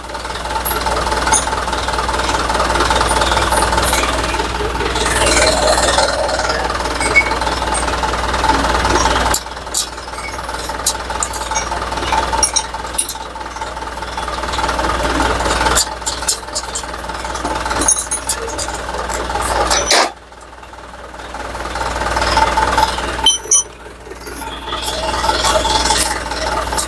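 A machine or motor running steadily and loudly, with a constant tone and low hum. It drops away sharply a few times, most deeply about three-quarters of the way through.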